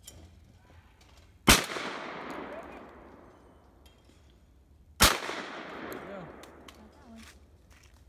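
Two shotgun shots about three and a half seconds apart. Each is followed by a long rolling echo that dies away over a couple of seconds.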